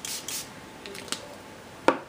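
Two short hissing sprays from a small pump spray bottle misting water onto ink on a paper tag, followed by a sharp click near the end.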